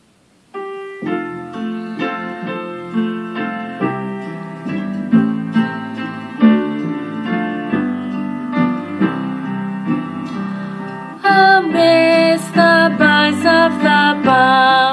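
Piano introduction starting about half a second in, a run of flowing notes. About eleven seconds in, a woman's voice comes in singing with vibrato over the piano.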